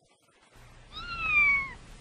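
A cat's single meow, about a second long, rising briefly and then sliding down in pitch, over a faint low hum.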